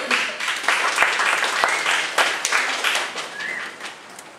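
Audience applauding, loudest at the start and dying down toward the end, with a couple of short high calls over the clapping.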